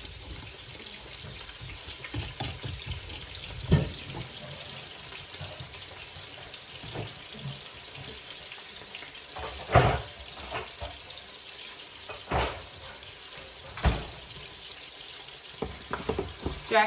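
Pork chops frying in a skillet, a steady sizzle, with a few short knocks and clunks scattered through it, the loudest about ten seconds in.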